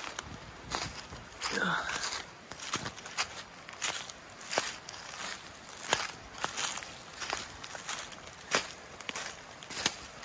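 Footsteps crunching through dry fallen leaves and twigs at a walking pace, each step a sharp crunch, about one to two a second.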